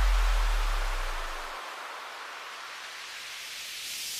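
Electronic dance music breakdown: a deep held bass note fades out over the first second and a half, leaving a hiss of white noise that swells slowly toward the end, a noise riser building toward the next drop.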